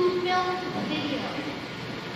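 A person's voice from the audience, heard off the microphone, asking the presenter a question in a few drawn-out, pitched syllables.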